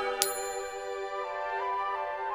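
A single bright ding sound effect marking a new quiz question, over soft background music with long held notes.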